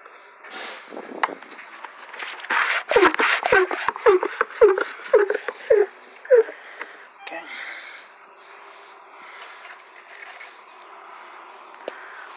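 Hand pump of a pump-up garden sprayer being worked to pressurise the tank: a run of about seven strokes, roughly two a second, each with a short falling squeak and clicks from the pump.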